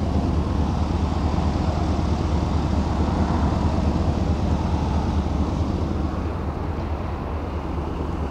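Chevrolet 6.0-litre Vortec V8 gasoline engine idling steadily with a low, even rumble.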